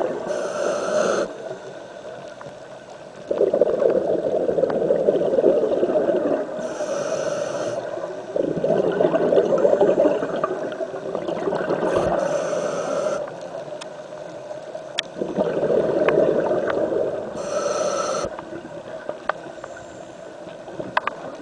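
Scuba diver breathing through a regulator underwater: four short hissing inhalations, each followed by a few seconds of gurgling, bubbling exhalation, in a slow, steady cycle of about five to six seconds. A few faint sharp clicks come near the end.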